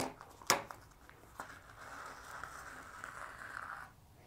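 Sewing thread being drawn through a punched hole in folded paper: a sharp tap about half a second in, then one long, even rasp of the thread sliding through the paper for about two and a half seconds.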